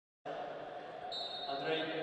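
Reverberant indoor arena ambience with a public-address voice starting near the end. A thin, steady high tone comes in about a second in.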